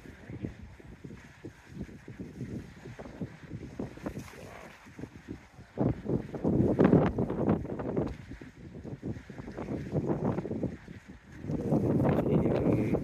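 Wind buffeting the microphone: a low, uneven rumble that swells in gusts, loudest about six to seven seconds in and again near ten seconds.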